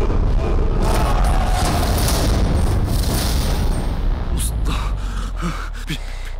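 Dramatic trailer sound design: a deep, steady low rumble under swells of noise, with several sharp hits in the last two seconds.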